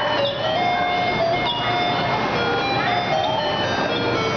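Tinny electronic jingle playing a melody of held, stepping notes with a few short gliding sweeps, like the tune of a coin-operated kiddie ride or ice cream van.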